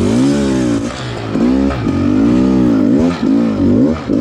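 Dirt bike engine revving up and down under the rider's throttle, its pitch rising and falling in about four swells with brief dips in between, as the bike works through a low-speed turn on a rocky climb.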